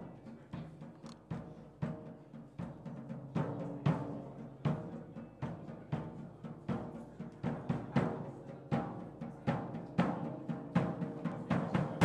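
Rock band's instrumental intro: drums hitting a steady beat over held bass guitar and keyboard notes, growing louder.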